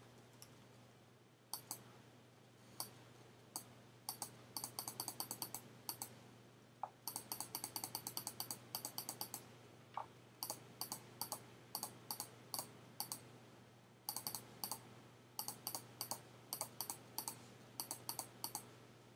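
Sharp clicks of a computer mouse button: some single, others in quick runs of several a second, as a brush is dabbed on an image in Photoshop. A faint steady hum runs underneath.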